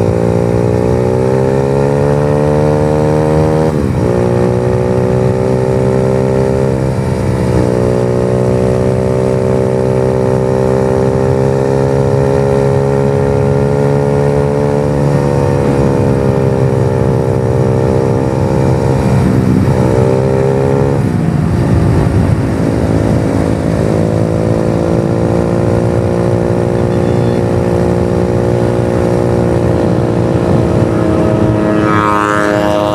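Trail motorcycle engine under way, heard from the rider's seat. Its pitch climbs and drops sharply twice in the first seven seconds as it shifts up through the gears, then holds a steady cruise, easing off and picking up again about twenty seconds in.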